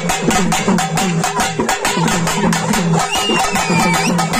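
Loud traditional festival drumming: rapid, even drum strokes, about five or six a second, over a repeating low melodic figure.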